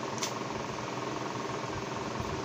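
Steady mechanical background hum with no speech, and one faint click about a quarter of a second in.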